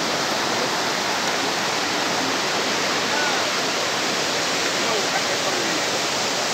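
A fast river running over rocks and rapids: a steady rush of water.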